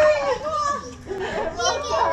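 Several women's voices talking and calling out over one another in excited chatter.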